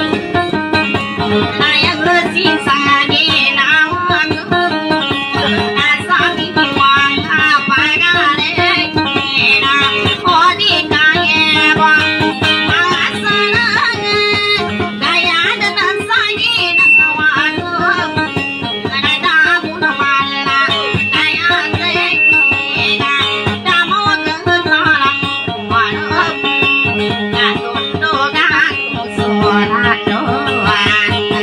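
Amplified kutiyapi, the Maranao two-stringed boat lute, plucked without pause in a busy, ornamented melody over a steady drone note.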